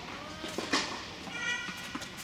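A sharp hit of a tennis ball about a second in, then a short high-pitched squeak of a tennis shoe on the hard court.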